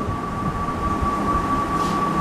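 Steady background room noise: a constant thin whine over a low, uneven rumble.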